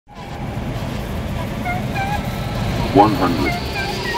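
A steady low rumble of a motor vehicle, with a few short high chirps and a single spoken word about three seconds in.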